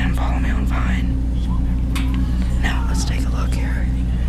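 Hushed whispering voices in short breathy phrases, over a steady low hum.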